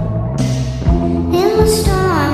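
A sped-up pop song: a singing voice over a steady beat and bass line, with a sliding vocal note in the second half.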